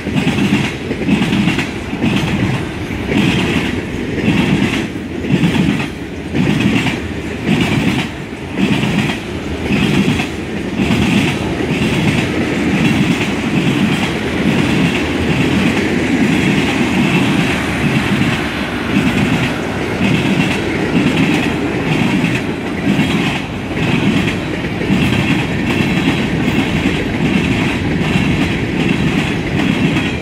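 Loaded mixed freight train rolling past close by, with double-stack container cars changing to tank cars and covered hoppers. Its wheels make a steady, rhythmic clickety-clack over the rail joints, with a regular beat about once a second that evens out in the second half.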